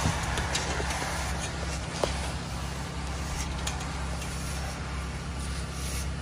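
An engine running steadily in the background, a low even hum, with a few faint clicks over it.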